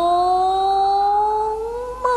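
A woman's voice singing Huangmei opera, holding one long vowel that rises slowly in pitch.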